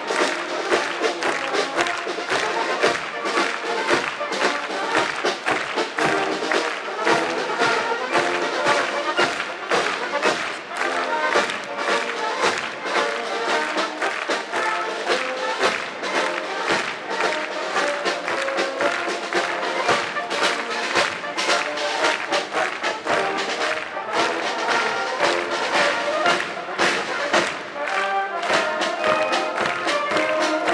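Brass marching band playing a march: trumpets, tubas and other brass carry the tune over a steady drum beat.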